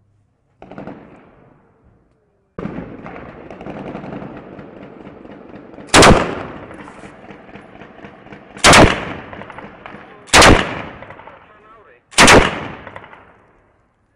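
Gunfire in an urban firefight: a short burst about half a second in, then a steady crackle of shooting, with four very loud bangs that each echo for about a second.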